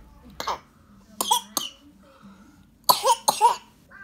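Short coughs in three groups: one about half a second in, two close together around a second and a half in, and three in quick succession near the three-second mark.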